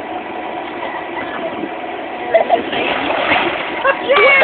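Two children sliding down an inflatable water slide and splashing into its pool about two and a half seconds in, over the steady hum of the slide's air blower and running water.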